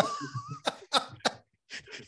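Men laughing: a short high-pitched wavering note, then about four quick breathy bursts of laughter.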